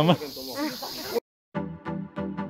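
A voice calling "Mama!" and going on speaking over a steady outdoor hiss, cut off abruptly just over a second in. After a brief silence, background music with a steady beat starts.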